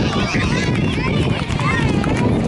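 Many children's voices chattering and calling out at once, a steady babble with no single speaker standing out.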